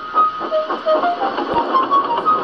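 Steam-engine puffing, an even chuff about four times a second, with a light tune of short, quick notes over it, stepping up and down in pitch.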